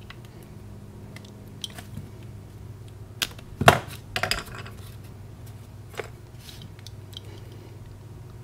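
Light clicks and taps of hands handling thin wires and small solder-seal connectors on a rubber mat, with the sharpest tap about three and a half seconds in and a few quicker ticks just after.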